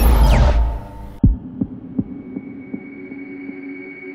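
Electronic logo-sting sound design: a loud low rumble with a falling whoosh dies away in the first second. A deep boom follows about a second in, then softer pulses about every 0.4 s that fade, like a heartbeat, over a steady hum.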